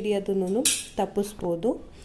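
A woman talking, with a brief metallic clink about half a second in as the stainless-steel wire gas-cylinder trolley is handled on the granite counter.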